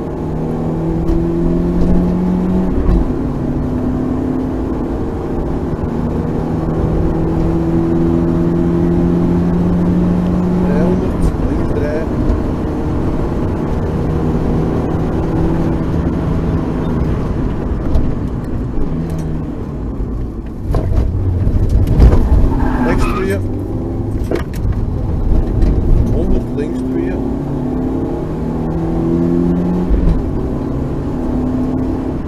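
Rally car engine heard from inside the cabin, pulling hard through the gears with a change in pitch at each shift; near the end it slows with a louder, rougher stretch of engine and road noise.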